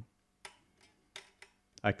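A few faint, scattered ticks and clicks from a hand moving along an Epiphone SG Special's neck toward the upper frets.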